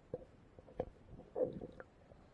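Muffled underwater sound of pool water stirred by a person exercising, heard through a submerged camera: a few dull knocks and a gurgling surge about a second and a half in.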